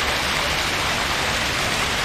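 Fountain water splashing steadily into its basin, an even hiss with no breaks.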